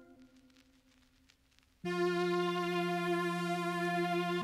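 A cheesy retro synth lead from the Analog Lab V software synth comes in about two seconds in and holds one long, buzzy note. Before it, the previous part fades out into near silence.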